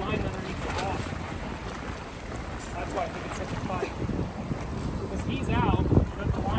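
Wind buffeting the microphone as a low, uneven rumble, with brief faint voices now and then.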